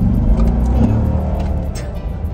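A car engine accelerating, a deep rumble that swells about half a second in and eases off toward the end, with background music.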